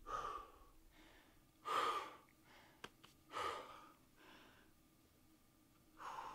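A rock climber breathing hard with effort while pulling on thin crimps: four sharp breaths, one to two seconds apart. There is a faint click near the middle.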